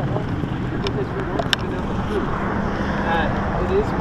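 Wind buffeting the microphone of a body-worn camera outdoors, a steady low rumble, with faint voices in the background toward the end and a single sharp click about one and a half seconds in.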